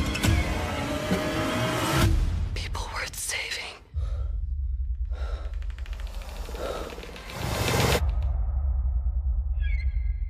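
Tense film-trailer music with a deep, rapidly pulsing bass and loud dramatic swells. It drops out briefly just before the four-second mark, then builds to a loud peak at about eight seconds.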